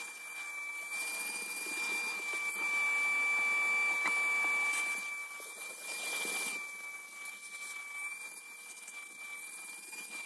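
Vacuum cleaner running with a steady high-pitched whine as its hose nozzle is worked over car floor carpet, louder for a couple of seconds in the middle.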